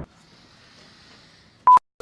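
A faint hiss, then near the end a single short, loud electronic beep at one steady pitch, cut off sharply into dead silence.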